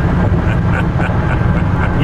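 Steady low road and wind rumble heard inside the cab of an electric-converted Chevy pickup cruising at highway speed, with no engine note.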